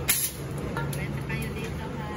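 A motor running with a steady low hum, and a short sharp hiss just after the start.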